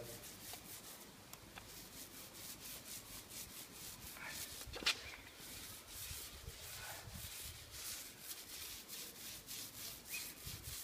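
Paint roller with a medium-pile sleeve being worked over a concrete wall, a faint, rhythmic rasping rub with each short stroke. A single sharp click about five seconds in.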